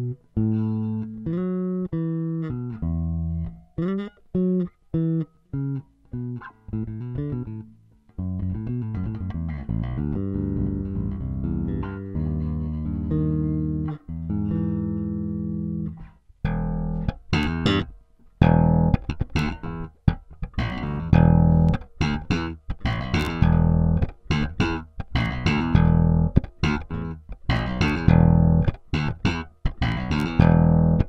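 KliraCort Jazz Bass, an MDF-bodied electric bass with two Jazz Bass-style single-coil pickups, played fingerstyle: first a line of separate plucked notes, then longer ringing notes, and from about halfway through a harder, brighter, more percussive attack on quick repeated notes.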